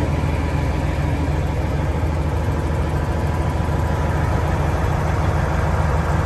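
Peterbilt semi truck's diesel engine idling, heard from inside the cab: a steady low rumble that does not change.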